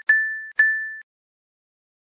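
A bright bell-like ding sound effect, struck twice about half a second apart, each ring fading and then stopping abruptly.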